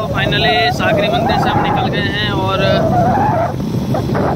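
A man talking over the steady rush of wind and road noise of a moving motorbike, with the speech pausing briefly near the end.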